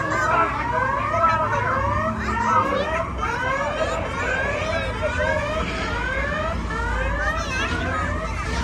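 An electronic alarm sounding over and over in short rising whoops, a few a second and overlapping each other, over a steady low rumble. It is the ride's alarm sound effect.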